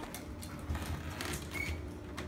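Light scattered taps and skittering of a kitten batting a plastic drinking straw across a hardwood floor, with one brief high squeak near the end.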